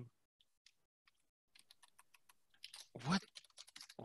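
Faint, quick computer keyboard typing, a rapid run of key clicks starting about a second and a half in. A brief vocal sound cuts in near the three-second mark.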